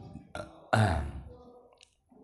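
A man's short throaty vocal sound, not words: it starts suddenly about two-thirds of a second in and fades over about half a second, after a faint click just before it.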